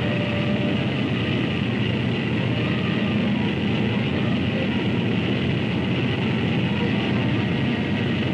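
Engines of a Convair B-36 bomber running on the ground, a steady drone that holds even with no change in pitch or level.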